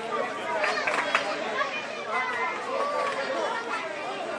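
Indistinct chatter of several voices at once, with people calling out around a football game.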